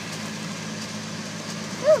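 Steady low hum of a car idling, heard from inside the cabin, with a girl's short 'Ooh' near the end.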